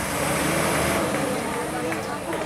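Diesel engine of a Lanka Ashok Leyland truck pulling hard up a dirt slope. Its steady drone swells in the first second and then eases slightly.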